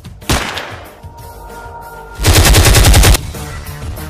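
Automatic rifle fire: a single sharp shot about a third of a second in, then a loud rapid burst of about a dozen rounds lasting just under a second, starting about two seconds in, over background music.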